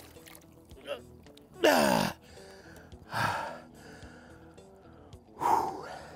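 A man's wordless gasps and exclamations, three of them: a falling "oh"-like cry about two seconds in, a breathy gasp a second later, and another falling cry near the end. Faint background music runs underneath.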